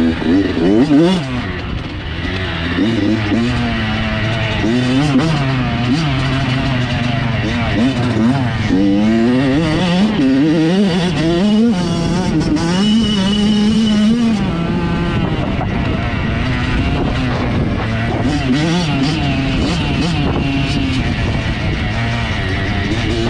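Dirt bike engine revving up and falling back again and again as the rider accelerates and shifts, heard from a helmet-mounted camera with wind noise.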